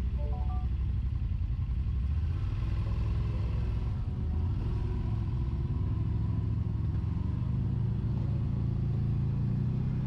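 Side-by-side UTV engine running at low revs, then rising steadily in pitch from about four seconds in as the machine moves off down the trail. A few brief high chirps come just after the start.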